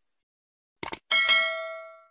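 A quick click, then a single bell ding that rings out and fades over about a second: a notification-bell sound effect.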